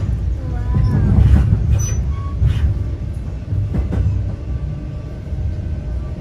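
Metra commuter train running, heard from inside the passenger car: a steady low rumble with a few sharp knocks.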